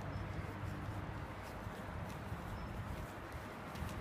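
Running footsteps on a concrete path, faint scattered steps over a steady outdoor background with a low hum that eases about a second in.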